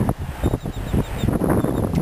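Wind noise buffeting the microphone in uneven gusts, with a few faint, short high chirps.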